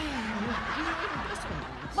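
Audience laughter: a soft spread of many people laughing at once, with no single voice standing out.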